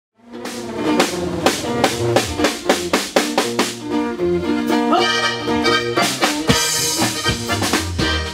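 Live norteño band playing an instrumental passage, with tuba bass, button accordion, bajo sexto and a drum kit keeping a steady beat. The music starts abruptly just after the beginning.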